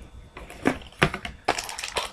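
Trading-card box packaging being opened and handled: a few sharp crackles and clicks with scratchy rustling between them.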